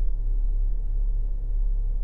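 Steady low rumble of indoor background noise. It runs evenly through the pause, with nothing else standing out.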